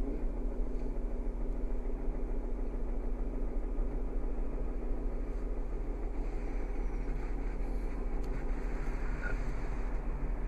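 Steady low hum inside a parked car's cabin, with a couple of faint clicks near the end.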